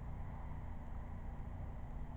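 Steady low background hum and hiss with no distinct event.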